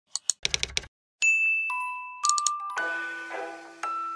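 A handful of quick clicks, like keyboard typing, in the first second, then a bright chime rings out and more bell-like notes follow, building into a light intro jingle.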